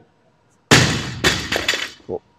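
Barbell loaded with 125 lb of bumper plates dropped from overhead onto the gym floor: a loud crash about two-thirds of a second in, a second impact about half a second later as it bounces, then a rattle of plates and sleeves that dies away within the next second.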